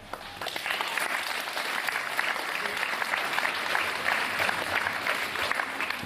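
Audience applauding, many hands clapping together, swelling up over the first second and then holding steady.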